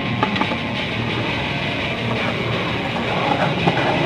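Skateboard wheels rolling on rough concrete, a steady rumble that grows slowly louder as the board comes closer, with a few faint clicks.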